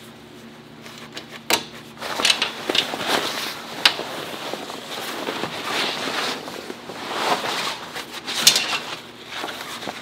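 Tent fabric rustling as it is pulled and stretched along the camper's side rail, with several sharp clicks of metal snap fasteners being pressed shut, the loudest near the end.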